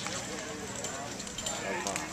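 Faint voices of onlookers, with a few light knocks of sandalled footsteps as a man steps from the dock onto the log.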